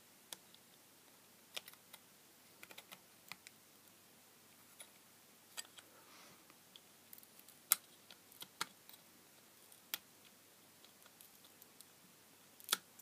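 Side cutters clicking and crunching against the metal screw cap of a small LED filament lamp as it is prised apart. The sharp clicks come at irregular intervals, a few close together, the loudest a little past the middle.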